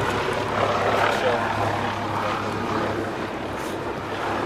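Aircraft engine droning steadily overhead as a low, even hum, with faint voices in the background.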